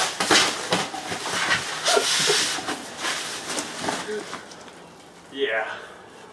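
Mylar water-powered blimp toy fed by a garden hose: a short hiss of water spray about two seconds in and scattered bumps and crinkles as the balloon knocks about on the grass, with wordless voice sounds and a short falling cry near the end.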